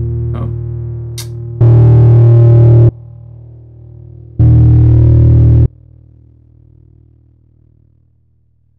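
Distorted electric guitar chord on a Stratocaster's bridge single-coil pickup, decaying through a noise gate / downward expander plugin. Twice the plugin is switched out for about a second and a half: the sustaining chord jumps back to full loudness with pickup hiss, then drops sharply when it is switched back in, and the chord fades away by the end.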